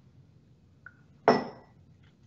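A small glass beaker clinks once with a short ring, about a second and a quarter in, after a faint tick a moment before.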